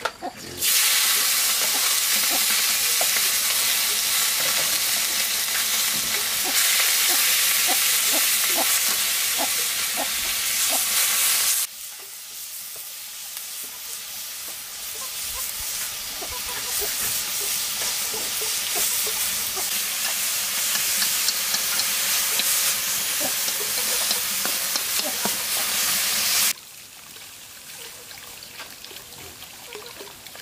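Chopped raw meat hitting a hot steel wok and frying with a loud, steady sizzle, with scattered small ticks. The sizzle drops sharply about halfway, builds again, then cuts off near the end.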